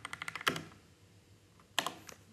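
Typing on a computer keyboard: a quick run of keystrokes in the first half second, a pause, then a few more keystrokes near the end.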